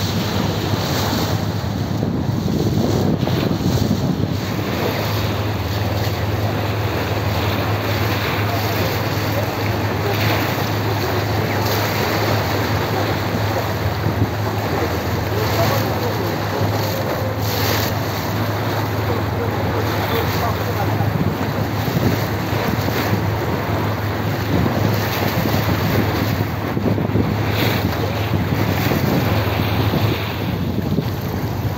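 Car ferry under way on a river: the vessel's engine drones steadily low, over the rush of water along the hull, with wind buffeting the microphone in gusts.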